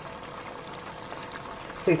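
Goat-head pieces simmering in liquid in a frying pan on a gas hob: a steady bubbling hiss.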